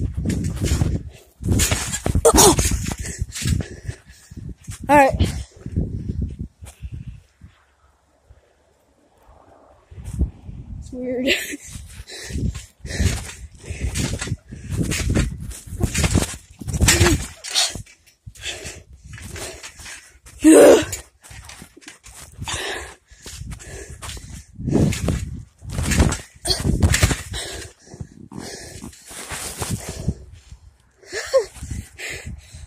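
Rustling and knocking on the microphone, with short bursts of muffled voices. The sound drops almost to silence for about two seconds a quarter of the way in.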